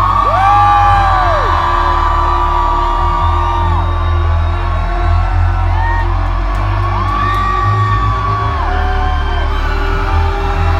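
Concert crowd whooping and screaming in long rising-and-falling calls over a loud, steady low bass drone from the PA, an intro track before the song starts.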